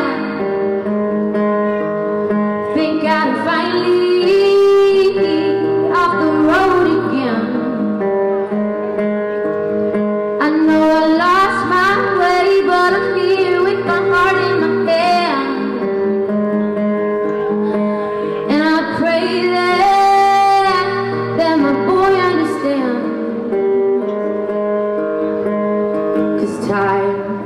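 A woman singing a soft, slow song live, with an acoustic guitar accompanying her throughout; her voice comes in phrases with held, bending notes and short gaps where only the guitar plays.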